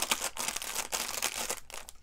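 Paper rustling and crinkling as a card insert and the pages of a handmade paper journal are handled and shifted by hand, a soft irregular rustle that dies away near the end.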